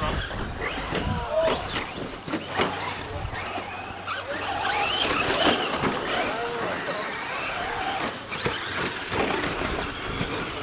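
Traxxas Slash short-course RC trucks racing on a dirt track: electric motors whining up and down in pitch as they throttle on and off, with tyres scrabbling over dirt and scattered knocks.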